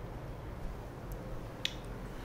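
Quiet room tone with a steady low hum, broken by a few faint ticks and one short, sharp click about a second and a half in.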